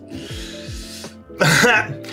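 A person coughing hard once, about one and a half seconds in, over quiet background music: the cough of someone choking on an extremely hot chili challenge food.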